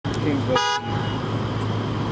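A short vehicle horn blast about half a second in, over the steady hum of a vehicle engine heard from inside a moving car.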